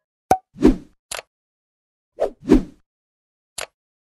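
Sound effects for an animated subscribe button: short sharp mouse-button clicks alternating with fuller pops. In order: a click, a pop, a click, a quick double pop, then a last click near the end.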